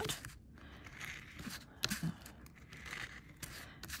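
Faint scraping of a plastic squeegee rubbed gently over embossed aluminium metal tape, pressing it down onto a card, with a few small clicks.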